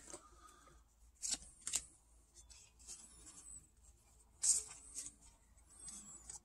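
Pokémon trading cards being handled and slid against one another: a few faint short scrapes in two pairs, about three seconds apart, with light rustling between them.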